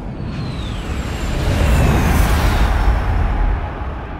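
Jet flyby sound effect: a deep rumble that swells and then eases off, with high whines falling in pitch as the jets pass.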